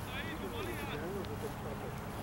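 Distant, indistinct voices of people calling across an open cricket field, including one high-pitched call early on, over a steady low rumble on the microphone.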